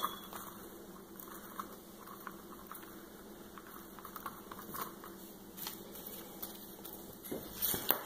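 Faint rustling and crackling of dry Spanish moss and an artificial leaf pick being handled and pressed into place, with scattered small ticks over a faint steady hum.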